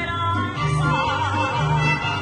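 Live mariachi band playing, with low bass notes changing about twice a second under a high melody that wavers with strong vibrato.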